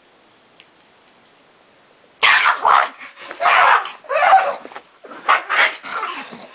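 Pug barking in excited play while being wrestled, a quick run of about six rough barks starting about two seconds in.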